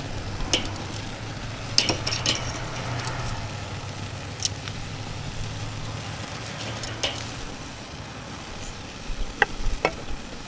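Tomatoes and tomatillos sizzling on a hot charcoal grill grate, with steel tongs clicking against the grate and the vegetables several times as they are turned. A low steady hum runs underneath and fades out about three-quarters of the way through.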